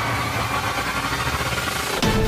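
A steady, rumbling, engine-like noise drone with no clear tune: a transition sound effect in a TV news programme's soundtrack, between stretches of theme music.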